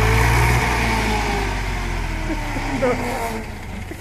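HMT 3522 tractor's diesel engine running under load with a steady low rumble. It drops a step about half a second in and then eases off gradually as the tractor is throttled down.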